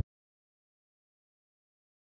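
Digital silence: no sound at all.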